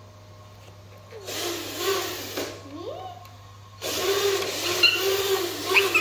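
Children's voices talking and calling out, with the whir of a small electric RC truck motor joining in about four seconds in as the truck drives.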